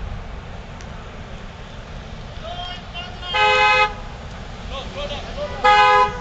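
Car horn honking: two short blasts, each about half a second, about two seconds apart, over the rumble of passing traffic.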